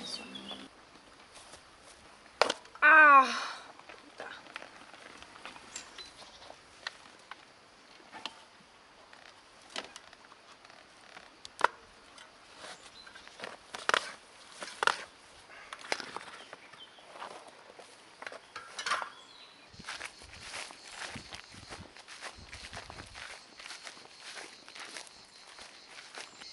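Scattered clicks, taps and scrapes of a bicycle wheel and its rubber tyre being handled as a punctured tyre is worked off the rim by hand. A brief voice sounds about three seconds in.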